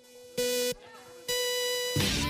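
Electronic start-countdown beeper: one short beep about half a second in, then a long beep at the same pitch from just over a second in, the long final tone that signals the start of the race.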